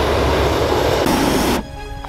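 Hot air balloon propane burner firing with a loud, steady roar that cuts off suddenly near the end as the burner is shut off.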